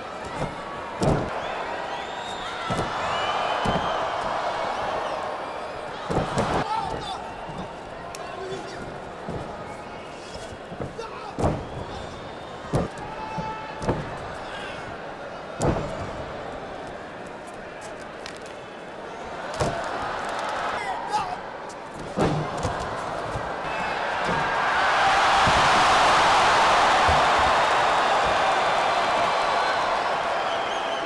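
Wrestlers' bodies slamming onto the canvas of a wrestling ring, a string of sharp impacts spread out over time, over a live arena crowd shouting. Near the end the crowd swells into a loud roar.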